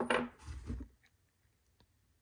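Light clatter and knocks of a metal spin-on filter canister and a plastic fluid jug being handled on a plywood bench, lasting under a second, then one faint click.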